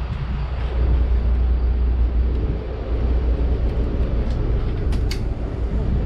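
A city bus standing at a stop with its engine running, a steady low rumble, with a couple of brief light clicks about four to five seconds in.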